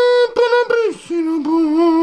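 A voice singing long held "aah" notes as the plaque is revealed. A high note breaks off about a quarter of a second in, and a lower, wavering note is held through the second half.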